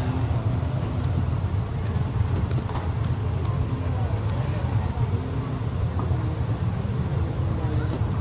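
Busy street ambience: a steady low rumble of traffic with scattered, indistinct voices of passers-by.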